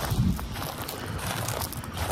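Distant children yelling and playing, a faint wash of voices without clear words, over a low rumble.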